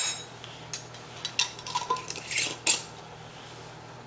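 Scattered clinks and light knocks of a small metal spoon and a glass jar against dishes on a stone countertop, with a brief ring of glass or china about halfway through.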